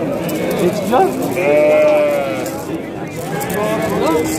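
A sheep bleating: one long call about a second and a half in, with people talking over it.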